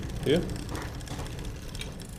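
Bicycle chain running over the chainring and sprockets as the crank is turned by hand, with a fast, even ticking and the chain rubbing on the outer plate of the front derailleur cage: the front derailleur needs moving outward.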